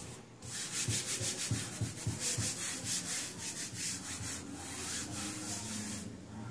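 Palms rubbing over fabric freshly glued onto an EVA foam sheet, smoothing it flat: a quick run of repeated rubbing strokes that starts about half a second in.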